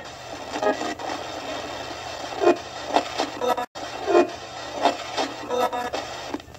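Portable AM/FM radio hissing with static, short snatches of broadcast sound cutting in and out at irregular moments, as in a spirit-box radio session. The sound drops out completely for an instant about halfway.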